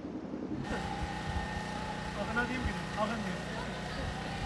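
A steady engine-like hum with faint voices talking in the background.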